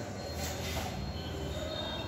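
Steady low rumble of background noise, with a brief rustle of paper textbook pages about half a second in.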